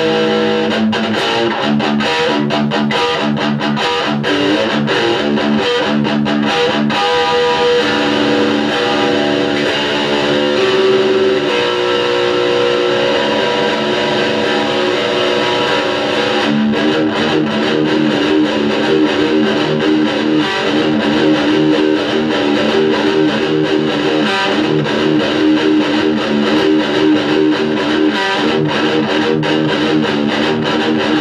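Distorted electric guitar playing heavy metal riffs: fast picked passages, a stretch of longer held notes, and a switch to a new fast-picked riff a little past halfway.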